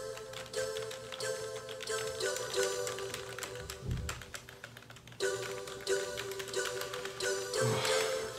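Quick clicking of typing on a computer keyboard over background music with held tones. The music drops out for about a second in the middle and then comes back.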